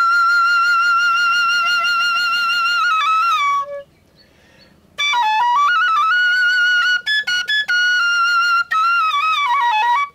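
Solo flute melody: a long held note with vibrato that slides down and stops, a pause of about a second and a half, then more phrases with short breaks, stepping down and back up in pitch.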